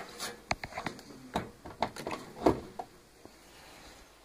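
A string of light clicks and knocks from a mains plug being pushed into a socket and handled, the loudest about two and a half seconds in. The 60 W test bulb wired in place of the blown fuse gives no buzz or hum.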